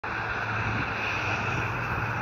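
A steady, unchanging drone: a low hum under an even hiss, with no distinct events.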